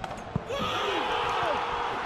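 A football kicked hard in a shot on goal: a single sharp thud. Then, about half a second in, a sudden swell of shouting and cheering as the shot goes in for a goal.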